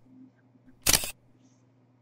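A single short, sharp click sound effect about a second in, like a mouse click on a subscribe button, over a faint steady low hum.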